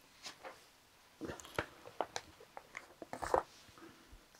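A sheet of paper rustling and crinkling as it is handled and passed over, in scattered short crackles and ticks, busiest in the middle.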